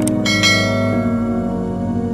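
Soft background music with a click at the start, then a bright bell chime that rings out and fades over about a second: the notification-bell sound effect of an animated subscribe button.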